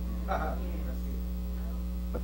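Steady electrical mains hum on the sound system, with a brief faint sound about half a second in.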